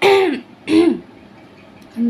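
A woman clearing her throat twice in quick succession, each time with a short vocal sound that drops in pitch, between lines of her singing.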